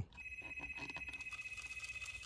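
Rivarossi model steam locomotive's small electric motor running on power-pack current with its wheels spinning free: a steady high whine over a fast, even ticking from the drive mechanism. It starts just after the power comes on, and the engine runs normally, with no short circuit showing.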